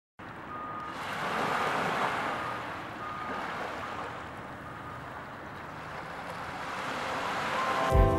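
Ocean surf washing onto a shore, a wave swelling about a second and a half in and another building towards the end, with a few faint brief high tones over it.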